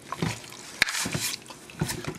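A plastic spoon stirring raw, seasoned chicken breasts in a slow cooker crock: wet squelches of the meat, with a sharp click a little under a second in as the spoon knocks the pot.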